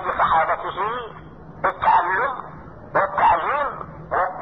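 Speech only: a man talking in phrases over a telephone link, with thin, phone-line sound.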